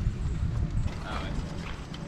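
Low rumble on the camera microphone, loudest at the start and easing off, with a faint voice about a second in.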